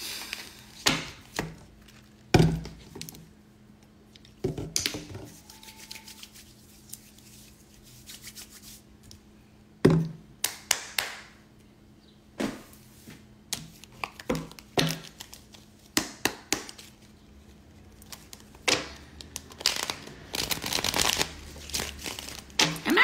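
A tarot deck being shuffled and handled: scattered sharp taps and knocks of the cards, a louder knock about two seconds in and another about ten seconds in, and a longer run of riffling cards near the end.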